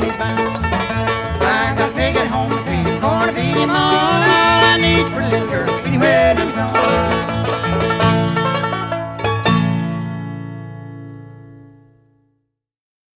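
Bluegrass string band playing an instrumental ending: five-string banjo picking with acoustic guitar and fiddle. The band stops on a last chord about nine and a half seconds in, which rings out and fades away.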